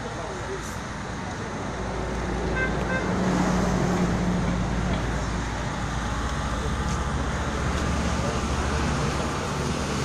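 Background crowd chatter with a road vehicle's engine running, growing louder about two seconds in.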